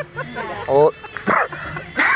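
Speech only: short spoken replies, with no other clear sound.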